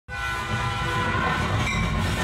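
A train sound effect: a whistle of several steady tones sounding together over a low rumble, starting abruptly and fading about one and a half seconds in.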